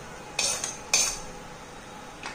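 Steel ladle striking the kadai twice, two sharp metallic clinks about half a second apart.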